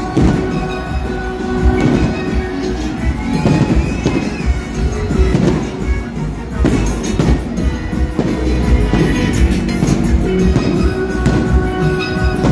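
Fireworks going off in a run of bangs over music playing.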